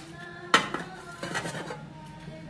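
Stainless steel plates and bowls clattering as they are handled: a sharp clang about half a second in that rings on briefly, then a few lighter clinks.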